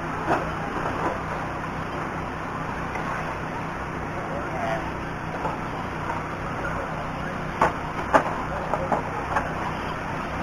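Outdoor racetrack background noise with indistinct distant voices, and a few sharp knocks in the last few seconds.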